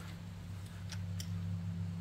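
A few faint, light clicks as hands handle the rear disc brake caliper of an e-bike, over a steady low hum.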